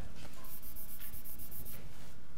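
Chalk scratching on a blackboard in a short stretch of writing, starting about half a second in and lasting just over a second.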